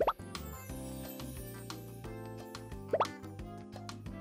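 Light cartoon background music, with two quick rising 'bloop' sound effects: one at the very start and another about three seconds in.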